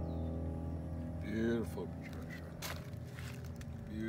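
The last sustained notes of a song fade out, leaving a steady low hum. About a second and a half in comes a short wordless vocal sound from a person, then a single sharp click.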